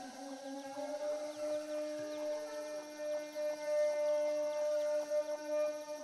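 A sustained drone: a few steady pitches held together without a break, like a held chord in a film score.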